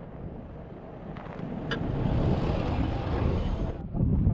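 Nissan Patrol SUV driving over sandy ground close to the camera. The engine and tyre noise grows louder over the first couple of seconds and then stops abruptly just before the end.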